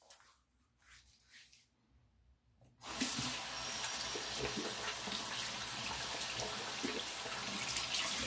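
Bathroom tap turned on about three seconds in, water running steadily into the sink.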